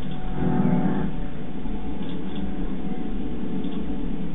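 Film-soundtrack bass played loud through a tapped-horn subwoofer with a 12-inch Dayton dual-voice-coil driver, heard in the room: a steady low rumble with a droning, horn-like tone that swells about half a second in.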